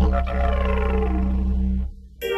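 A didgeridoo droning on one low, steady pitch with shifting overtones. It stops abruptly near the end.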